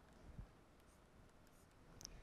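Near silence: faint scratching of a pen writing on paper, with one soft tap a little under half a second in.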